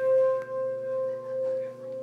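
A single bell-like ringing note, struck just before, sustaining and slowly fading with a pulsing, wavering loudness, over a soft low held tone.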